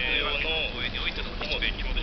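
Speech playing through a small portable TV's built-in speaker, with paper leaflets being handled and slid off a stack.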